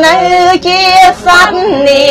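A woman's solo voice chanting Khmer smot, the melodic recitation of Buddhist verse. She holds long notes with a wavering, ornamented pitch and breaks briefly twice.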